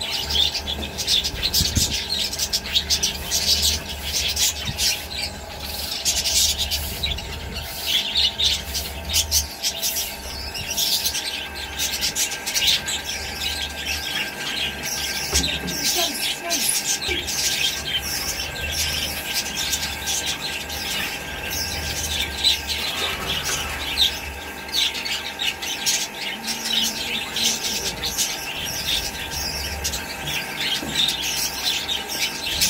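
Budgerigars chattering: a dense, continuous stream of rapid chirps, warbles and squeaky notes from several birds.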